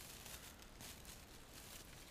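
Near silence, with faint rustling of pine boughs and dried weeds as a wired stake is pushed down into the hanging basket's soil.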